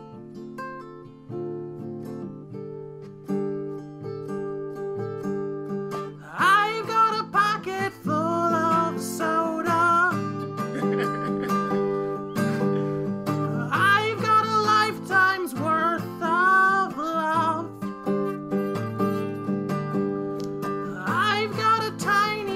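A song on acoustic guitar with a singer. The guitar plays alone for the first six seconds or so, then the voice comes in for sung phrases, twice in the middle and again near the end.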